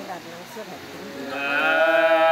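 Unaccompanied Nùng sli folk singing: a long held sung phrase fades into a brief lull, then about a second in a new drawn-out note rises and is held.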